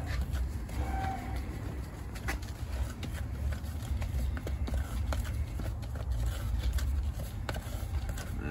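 A metal spoon stirring milled black powder in a plastic mixing cup, giving irregular light clicks and scrapes over a low rumble. The powder is being worked with a few drops of water until it stops raising dust.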